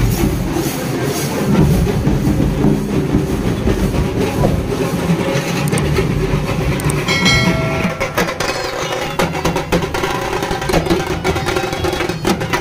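Loud procession music with drumming. From about eight seconds in, quick stick strokes on dhak drums come to the fore, and a brief held tone sounds just before.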